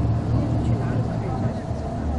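Engine and road noise inside a moving vehicle's cabin: a steady low drone.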